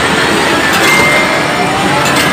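Loud arcade din: a steady wash of noise from game machines and the crowd, with faint electronic tones from the machines, one rising and one short and high about a second in.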